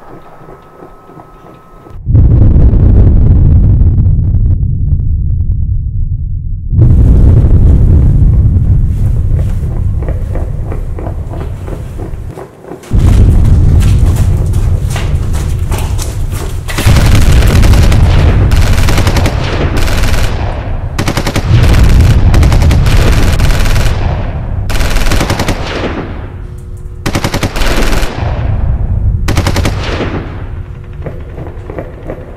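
Repeated long bursts of rapid machine-gun fire with a heavy low rumble. The first starts suddenly about two seconds in, and about five more follow every four to five seconds.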